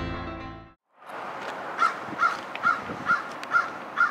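Background music with piano fading out, then after a moment of silence, outdoor ambience with a bird calling six times in an even series, about two calls a second.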